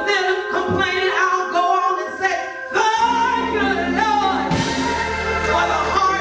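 Live gospel worship singing through a church PA, voices at microphones. A low instrumental accompaniment drops out for the first three seconds or so, then comes back in.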